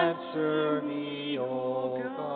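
A woman cantor singing the responsorial psalm in a slow chant, her voice held over sustained low accompanying notes. The melody steps down to a new note about a second and a half in.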